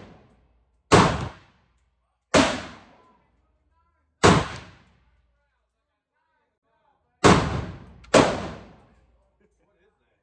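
Five single gunshots from an AR-15 pistol, fired one at a time at uneven gaps of about one to three seconds, each with a short echo off the walls of the indoor range.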